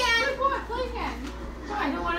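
Children's high voices talking and calling out during play.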